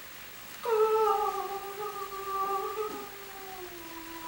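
A woman's voice holding one long sung note that begins about half a second in and slides slowly down in pitch.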